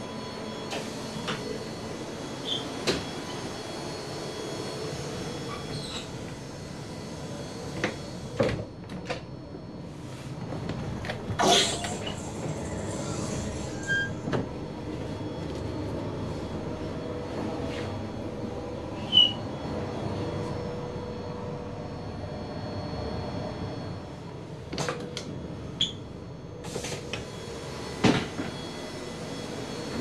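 Steady running noise inside a NSW Xplorer diesel railcar, with a few sharp clunks and knocks from a fold-down baby change table and toilet fittings being handled, the loudest about eleven seconds in and another near the end.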